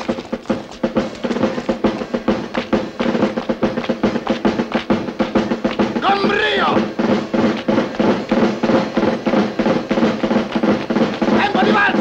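A military march with a snare drum playing a fast, steady rhythm over held low notes. A man's voice calls out about halfway through and again near the end.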